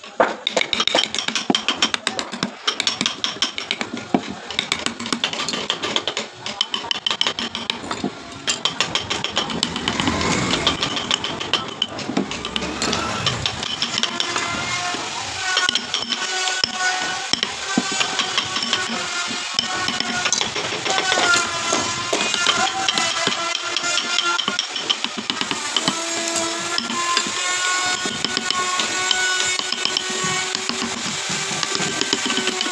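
Wooden mallet driving a carving chisel into wood in rapid, irregular knocks. About halfway through, music with a melodic voice comes in and takes over, with tapping still faintly under it.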